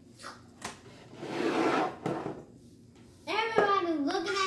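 Shelf boards being handled: a light knock, then a rubbing, sliding sound of board against board for about a second. A voice starts near the end.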